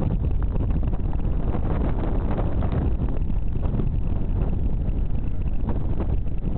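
Wind buffeting the camera microphone: a steady, loud low rumble with no let-up.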